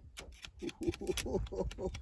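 A man's voice speaking indistinctly, with rapid irregular clicks throughout.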